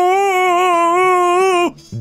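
A long, howl-like held note, wavering slightly in pitch, that cuts off suddenly near the end.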